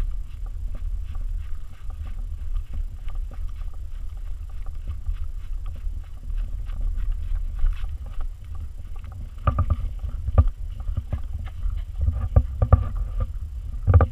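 Steady low wind rumble on the microphone, with a quick patter of a Pembroke Welsh corgi's paws running on grass. Louder bursts of knocks and rustling come about ten seconds in and again a little after twelve seconds.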